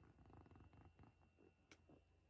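Near silence: quiet room tone with faint soft sounds and one small click near the end.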